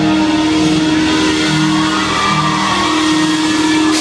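Live rock band playing loud, with electric guitars holding sustained chords. The held low note steps up a little about three seconds in.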